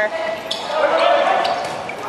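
Dodgeballs bouncing and thudding on a wooden gym floor during play, a few separate knocks echoing in a large hall, with players' voices calling out.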